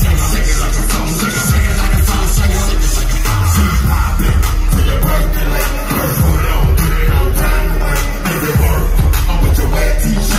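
Loud live hip hop music over a concert sound system, with a heavy bass that pulses through the whole stretch.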